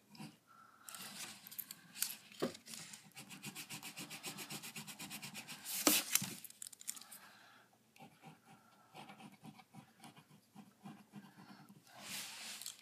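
Fast, even back-and-forth rubbing on a sheet of paper, from about a second in until past seven seconds, with one sharper scrape near six seconds; fainter, scattered scratches on the paper follow.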